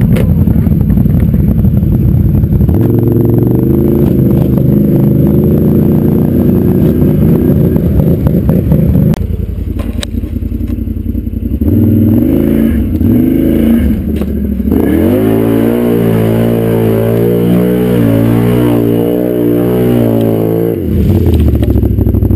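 ATV engine revving and running under load in deep mud, its pitch rising and falling with the throttle. The note drops off about nine seconds in, revs back up in a few quick glides, then holds a steady high drone for several seconds before easing off near the end.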